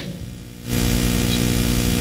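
Steady electrical mains hum with a hiss that grows louder about two thirds of a second in.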